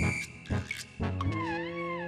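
Comic background music sting for a reaction shot: a brief high note, then a long wavering, vibrato-laden note over held lower tones from about halfway in.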